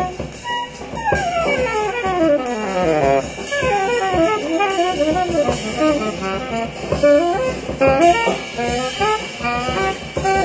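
Live small-group jazz: saxophone playing fast, winding melodic lines, with a long falling run about a second in, over drums.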